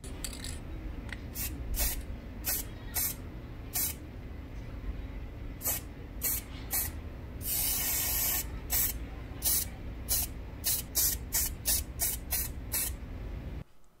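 Aerosol can of spray lacquer being sprayed in about twenty short hissing bursts, with one longer spray of nearly a second about halfway through. The bursts come faster, two or three a second, in the later part. A steady low rumble runs underneath.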